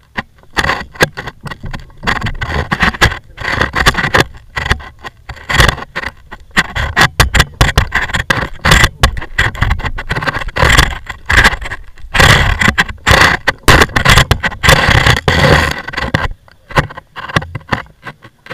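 Loud, irregular knocking, scraping and rustling as people climb out of a parked microlight trike with its engine stopped. The noises come thick and fast and thin out near the end.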